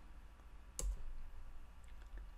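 A single sharp click a little under a second in, the click of a computer control advancing the presentation to its next slide, over faint room hiss.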